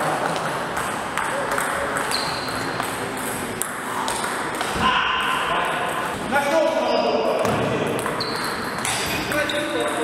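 Table tennis rally: a plastic ball pinging off the rackets and the table in a series of sharp clicks, with voices talking in the background.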